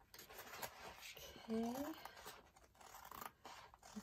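Scissors cutting along the edge of a diamond painting canvas, a faint run of snips and rasping cuts.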